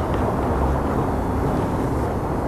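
Steady engine and road noise of a car in traffic, heard from inside the car's cabin.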